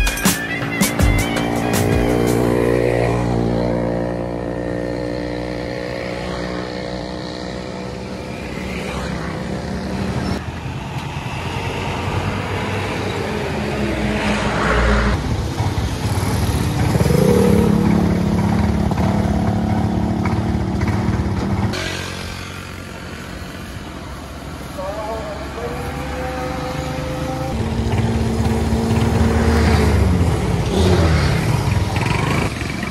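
Small motorcycle engine running at idle close by, with road traffic passing and voices in the background.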